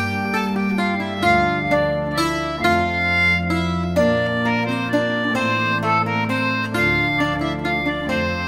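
Slow Irish air with a Wheatstone English concertina playing the melody, a Sobell octave mandolin plucking alongside, and a Roland organ holding long low notes that change every second or two.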